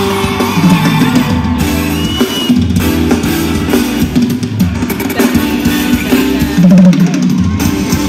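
Loud live pop concert music over a stage sound system, an instrumental stretch led by a drum kit beat and deep bass, heard from within the crowd.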